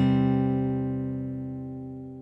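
A closing chord on an acoustic guitar ringing out, its notes held steady and slowly fading away.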